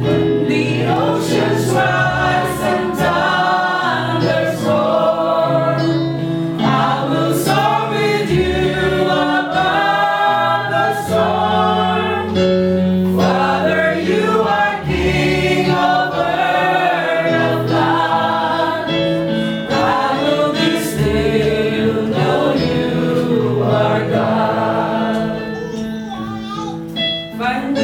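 Small mixed group of men and women singing a worship song together, led by a man singing into a microphone, over an instrumental backing of held low chords that change every few seconds.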